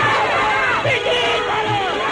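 A crowd of many voices shouting together, over a low drum beat about once every 0.85 seconds.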